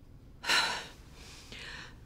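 A woman's short, sharp intake of breath about half a second in, followed near the end by a fainter breathy exhale: an upset, tearful gasp and sigh.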